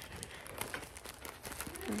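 Thin plastic mailer pouch rustling and crinkling faintly as it is worked open by hand.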